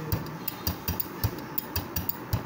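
Instrumental break in a Lalon folk song with no singing: a steady percussion rhythm of low drum beats and sharp high clicks, about four to five strokes a second.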